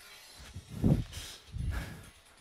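Two dull thuds, about a second in and again near the end, as feet land on a plastic aerobic step and wooden floor during step-and-jump moves.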